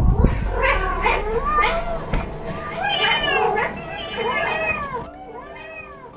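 Cats meowing, one meow after another with some overlapping, fading near the end, after a brief thump right at the start.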